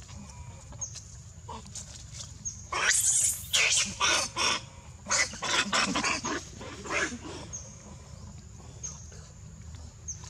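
Baby macaque screaming: a run of loud, shrill screams from about three seconds in to past seven seconds, as an adult monkey stands over it.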